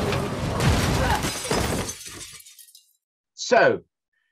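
Film action-scene sound effects with the music removed: a dense, noisy stretch with several impacts that fades out about two and a half seconds in. A brief voice sound follows near the end.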